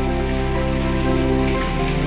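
Salmon belly pieces sizzling and crackling in hot oil in a wok, under background music.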